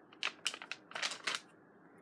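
Paper pages of a handmade junk journal being turned, a string of short papery rustles and crinkles over about the first second and a half.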